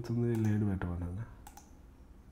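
A man's voice says 'initialization' over a few sharp computer clicks. The last click comes about a second and a half in, after the word ends.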